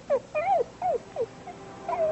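A dog whimpering: a run of short whines, each falling in pitch.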